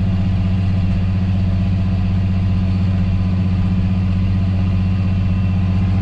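Tractor engine running steadily while pulling a seeding rig, heard from inside the cab as a constant low drone with two strong deep hums.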